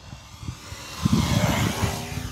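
Electric motor and propeller of an FMS Piper J-3 Cub RC plane flying past overhead: a whirring hiss that swells and then eases as it passes. Irregular low rumbling on the microphone joins in about a second in.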